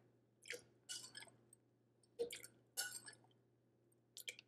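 Faint trickles and small splashes of cold water being spooned by the tablespoon into a plastic blender cup, in four short spells.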